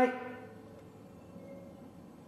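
Quiet workshop room tone with a faint steady low hum, just after the last word of a man's speech trails off at the start; no distinct clunks from the steering joints stand out.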